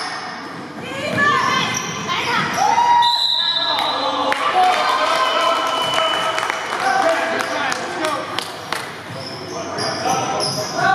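Basketball game in a gym: a basketball bouncing on the court floor with many short knocks, and voices calling out across the echoing hall.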